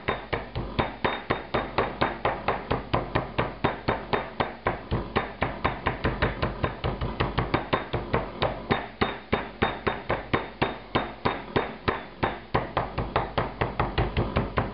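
A round-faced metal meat mallet pounding a thin beef steak through cling film against a wooden cutting board, a steady run of gentle blows at about four a second. The meat is being flattened to an even thickness and its fibres broken up to make it more tender.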